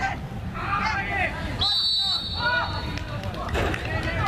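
Voices of people talking beside the pitch, with one long, steady, high-pitched referee's whistle blast of about a second and a half, starting about one and a half seconds in.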